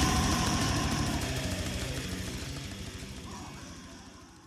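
Brutal death metal recording, with distorted guitars over rapid drumming, fading out steadily at the end of the track.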